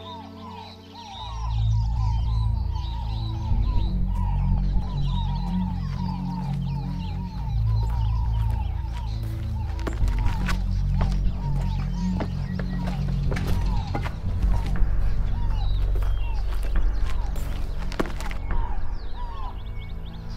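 Background film score with sustained low bass notes, over a rapid run of short repeated chirps in the first half and scattered light clicks in the second half.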